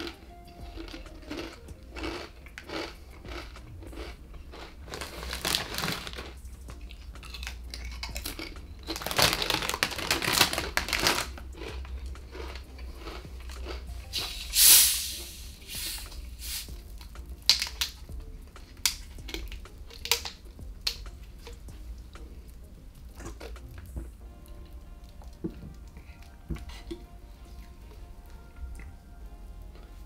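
Crisp packet crinkling and rustling in bursts, with scattered crunching clicks of crisps being eaten; the loudest is a short, sharp hiss about fifteen seconds in.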